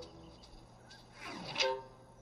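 Cartoon sound effect over soft background music: a quick falling whoosh that ends in a short pitched hit about a second and a half in.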